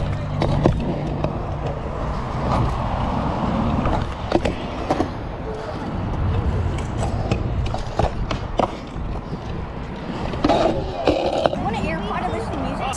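Pro scooter wheels rolling over a concrete skatepark surface, a steady rumble broken by scattered sharp knocks and clacks.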